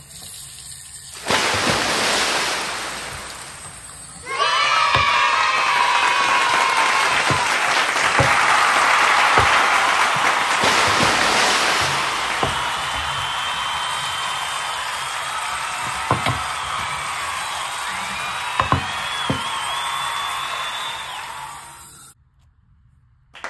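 Tap water running into a sink basin and splashing over a hookah piece. It comes in a short burst, then runs steadily from about four seconds in, with a few knocks as the piece is handled against the sink.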